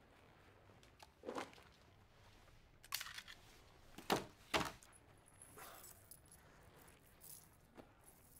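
A handgun and a badge on a metal chain set down on a desk: a few sharp knocks with a metallic jingle. The loudest two knocks come close together about four seconds in.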